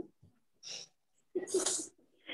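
A person's short breathy bursts of breath and voice. A faint hiss comes at about 0.7 s, and a louder, sharper burst follows about one and a half seconds in.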